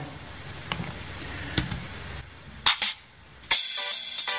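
A few sharp clicks over quiet room noise, then, near the end, a multi-instrument MIDI song begins playing back from a sequencer, starting abruptly and loud.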